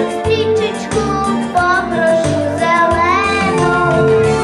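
A young girl singing a melody with an instrumental accompaniment behind her that has a regular pulsing bass.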